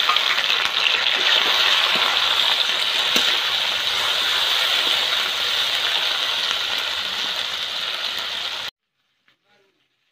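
Ginger-garlic paste and sliced onions sizzling loudly in hot oil in an iron wok, a steady frying hiss that cuts off suddenly near the end.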